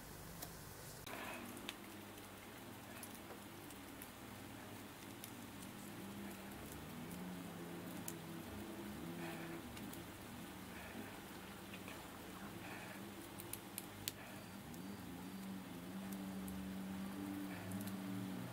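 Faint handling of the small parts of a Tamiya TT-01 one-way differential being fitted together by hand: soft rubbing and taps with a few sharp clicks, several close together about two thirds of the way through. A faint low hum that shifts in pitch runs underneath.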